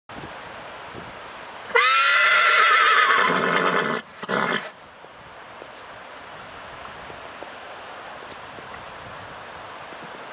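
A horse whinnying loudly: one long call about two seconds in, sharply rising in pitch and then trailing down with a wavering quaver, followed by a short final burst.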